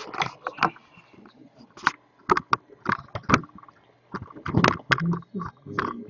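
Handling noise from the camera being picked up and swung around: a run of irregular knocks, clicks and rubbing.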